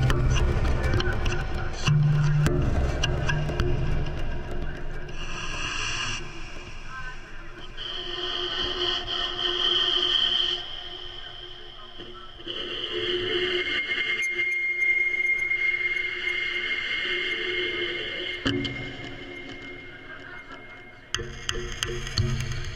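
Leaf Audio Microphonic Sound Box played by hand and with a rosined bow, its sounds picked up by its built-in microphones and effects: low pitched tones and taps at first, then long high squealing bowed tones, one held steady in the middle, before low tones return near the end.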